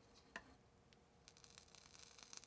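Near silence: a faint tick, then a faint fine crackle from a bit over a second in, as a soldering iron melts solder onto a wire joint.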